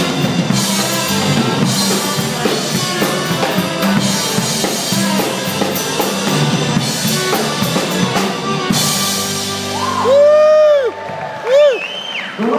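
Live band with a drum kit playing, with cymbal crashes every couple of seconds. The music stops about ten seconds in, followed by two loud high pitched calls that each rise and fall.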